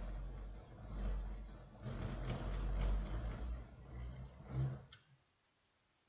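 Handling noise as the camera is moved by hand close up: irregular low rumbling and rustling bumps, which stop about five seconds in.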